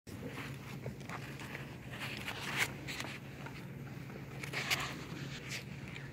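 Quiet hall noise just before an orchestra starts playing: faint rustles and a few soft knocks over a low steady hum, with the sharpest knocks about two and a half seconds in and near five seconds.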